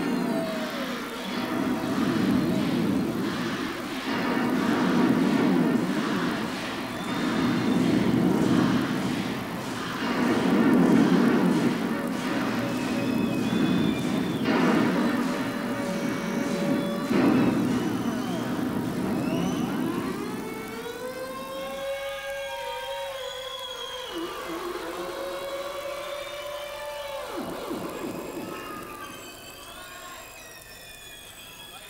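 Electronic keyboard (synthesizer) music from a live rock set, with no vocals. Sustained chords swell and fade about every two seconds. From about twenty seconds in, the music thins to sliding tones that bend up and down in pitch and grows quieter.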